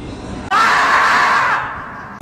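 The 'screaming marmot' meme sound effect: one loud, raspy scream lasting about a second, starting about half a second in and then cutting off.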